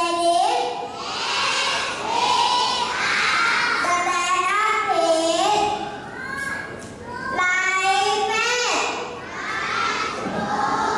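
A group of young children singing loudly together in unison, their voices close to shouting, with held notes that step up and down in pitch; the singing eases off near the end.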